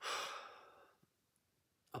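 A person sighing: one breathy exhale lasting about a second that fades away.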